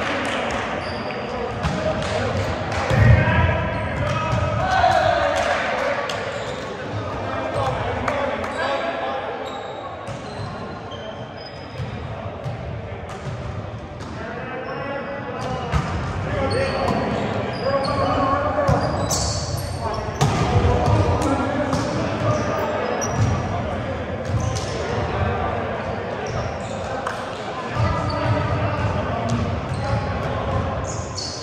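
Indoor volleyball game on a hardwood gym floor: knocks of the ball being hit and bouncing, with indistinct shouts and chatter from the players echoing in the large hall.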